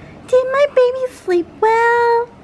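A toddler babbling in a high sing-song voice: several short syllables, then one longer held note near the end.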